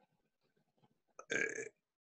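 A single short throaty sound from a man, about half a second long, a little over a second in, after a quiet pause.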